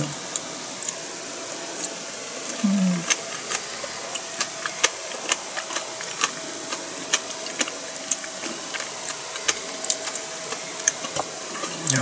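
Someone chewing food close to the microphone: a run of irregular small wet mouth clicks, with a short hummed 'mm' about three seconds in. A faint steady hum lies underneath.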